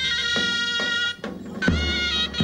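Zurnas (shrill double-reed folk shawms) playing a traditional melody over about four strokes of a large davul (daouli) drum. The pipes break off just after a second in and come back in on a loud drum stroke.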